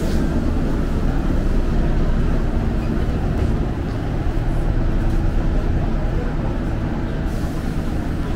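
Steady low rumble inside a commuter train carriage as the train runs.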